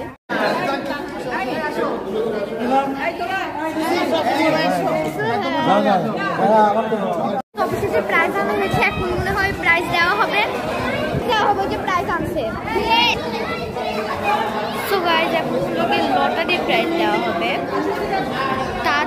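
Chatter in a large hall: many people talking over one another. The sound cuts out for an instant twice, once just after the start and once about halfway through.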